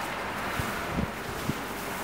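Wind on the microphone with a few soft, low thumps about half a second apart.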